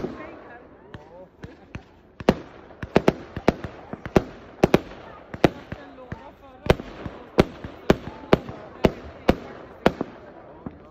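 Fireworks going off: a rapid series of sharp bangs as aerial shells launch and burst overhead, a few each second, with a short lull about a second in before they pick up again.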